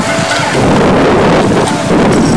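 Wind buffeting the camcorder's microphone: a loud, rushing noise that thickens about half a second in.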